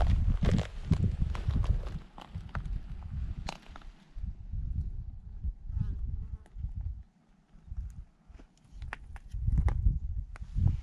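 Gusty wind rumbling on the microphone, with scattered crunches and clicks of footsteps on dry twigs and dirt. It drops briefly quieter about seven seconds in.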